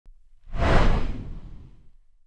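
Intro whoosh sound effect: a noisy whoosh with a deep rumble under it swells in about half a second in, then fades away over the next second.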